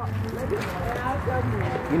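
Faint voices of people talking in the background over steady outdoor noise.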